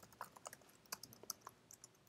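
Faint typing on a computer keyboard: a handful of irregularly spaced key clicks.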